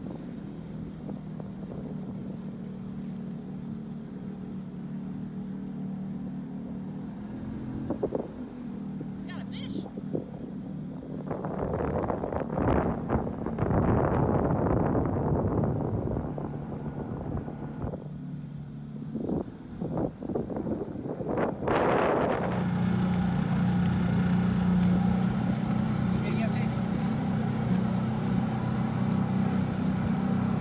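Boat motor running steadily at low speed. Wind buffets the microphone through the middle stretch, and about two-thirds of the way through the motor comes up louder.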